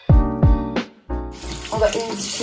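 Background keyboard music with a sliding bass line, cut off about a second in by a tap running water into a sink, as hands are washed.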